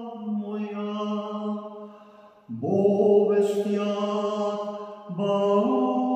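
A man singing a Russian Orthodox chant solo and unaccompanied, in long held notes. About two seconds in a note fades away, then a louder new phrase begins at about two and a half seconds, and the pitch steps up near the end.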